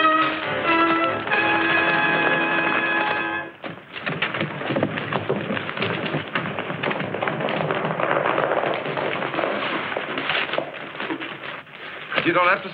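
Orchestral western film score playing held chords, then from about four seconds in a busier stretch of music with a rapid clatter of horse hoofbeats mixed in.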